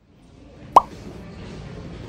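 A single short plop with a quick falling pitch, about three-quarters of a second in, over faint background noise.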